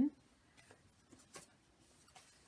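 Faint handling sounds of a paper card and small items on a desk: a few soft ticks and light rustles, the clearest about a second and a half in.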